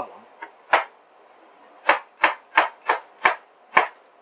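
Chef's knife chopping a purple onion on a cutting board: a single chop about three-quarters of a second in, then a run of six quick chops at about three a second.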